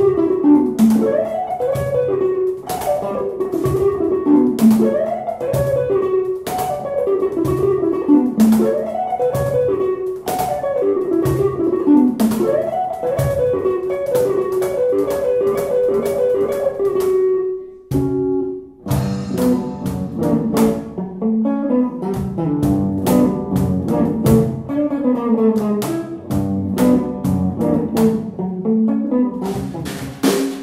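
Live music: an archtop electric guitar plays repeating melodic figures over crisp percussion taps that keep a steady pulse. The music breaks off for a moment about two-thirds of the way through, then comes back in a different, busier passage.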